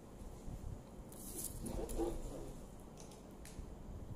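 Quiet eating sounds from someone chewing a mouthful of fried rice eaten by hand, with a short, louder mouth sound about two seconds in and a few faint ticks afterwards.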